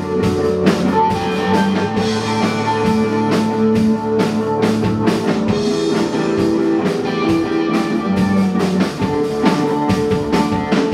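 Live rock band playing an instrumental passage: electric guitars through amplifiers holding sustained notes over a steady beat on a Yamaha drum kit.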